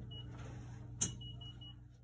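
Control panel of a Midmark steam sterilizer (autoclave) being keyed to start a cycle: one short electronic beep, then a button click about a second in followed by four quick beeps of the same pitch, over a steady low hum.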